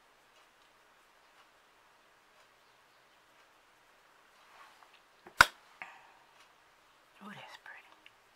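Faint room hiss for about four seconds, then a few softly whispered words, with one sharp click about five and a half seconds in, the loudest sound. A couple of quiet spoken words come near the end.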